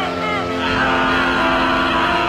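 A woman screaming a name in panic, over a film score of steady held chords.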